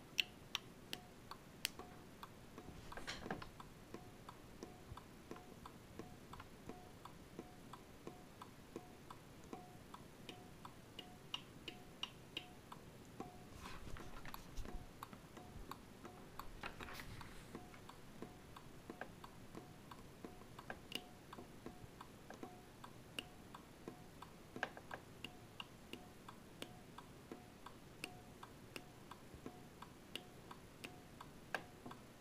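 Homemade fence energiser made from an automotive flasher relay and ignition coil, ticking steadily as the relay switches the coil on and off, with a few brief rustles of handling.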